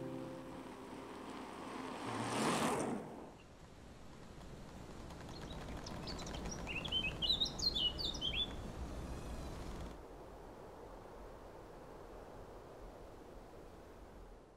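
A small bird chirping in a quick run of short high notes for about two seconds, over faint outdoor ambience, after a brief whoosh a couple of seconds in.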